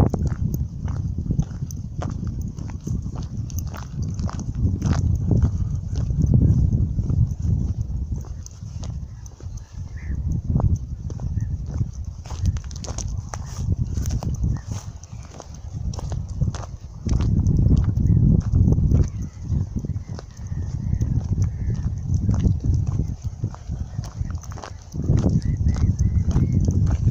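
Wind buffeting the microphone of a handheld phone, rising and falling in gusts, with scattered clicks of footsteps and handling as the holder walks.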